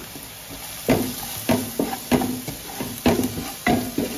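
Chopped onions, green chillies and chilli powder sizzling in a large aluminium pot while a wooden spatula stirs and scrapes the bottom, with short knocks against the pot about twice a second over a steady hiss.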